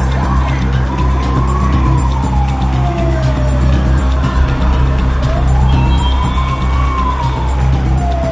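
A siren wailing, its pitch slowly rising and falling twice, over background music with a steady low bass.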